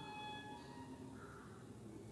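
Faint ballpoint pen strokes on paper, with a brief steady tone at the start, like a distant horn, lasting about half a second.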